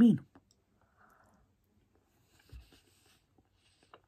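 A word of speech ends, then a near-quiet stretch of faint chewing and mouth noises, with a low soft thud about two and a half seconds in. A single light click near the end, a metal fork touching the plate.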